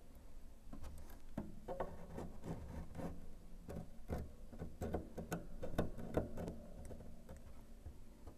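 Irregular small clicks and taps of a plastic glue syringe being handled and pressed against a piano's wooden rib and soundboard while glue is injected into the separated joint.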